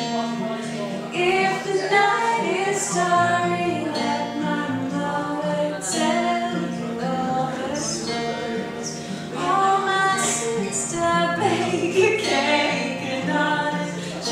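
A woman singing to her own acoustic guitar accompaniment, in an informal acoustic song performance.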